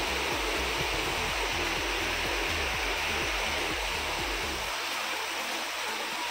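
Heavy rain pouring down: a steady hiss of rainfall.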